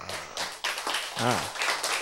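Light, scattered hand clapping, with a brief voice sound about a second in.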